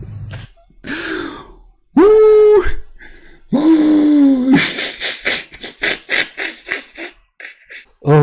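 A man's voice gives two long, drawn-out shouted calls. These are followed by a quick run of breathy, muffled laughter, about three bursts a second.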